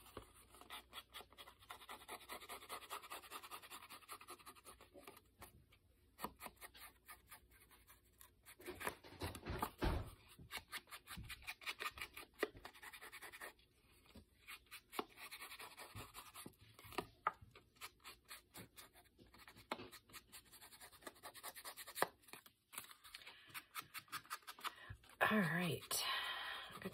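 Foam ink blending tool rubbed on an ink pad and swept along the edges of a paper card, making a run of short, soft scratchy strokes.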